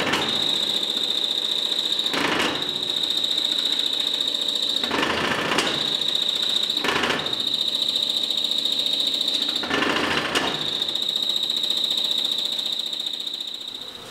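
Cowan Silver Queen honey uncapper running, its heated knives sawing the wax cappings off full honey frames: a steady high-pitched whine with short, louder, rougher swells every couple of seconds. It eases off near the end.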